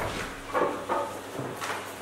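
Paper rustling in several short bursts as a sheet is taken out and unfolded by hand, over a steady low hum in the hall.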